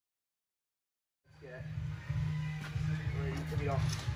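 Dead silence for about the first second. Then a radio playing music with a heavy pulsing bass comes in suddenly, with voices over it.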